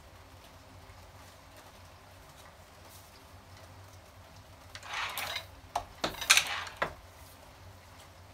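Hand-feeding at a 1922 Golding Official No. 4 tabletop platen press. After a few quiet seconds comes a brief rustle of paper and then several sharp clacks from the cast-iron press's moving parts, the loudest about six seconds in.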